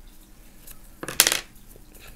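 A wooden pencil dropped onto a wooden tabletop, clattering briefly about a second in.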